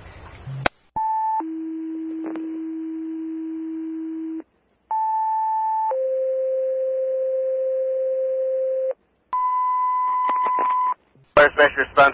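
Fire dispatch two-tone sequential pager tones over a scanner radio: a short high tone followed by a long steady lower tone, sent twice with different pitches, then a shorter steady high alert tone. They tone out the Spencerport fire department for a mutual-aid fill-in.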